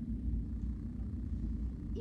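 Steady low rumble of room background noise in a short pause between sentences.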